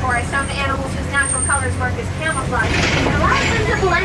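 Open-sided safari truck's engine rumbling low and steady as it drives along a rough track, under people's voices, with a brief hiss about three seconds in.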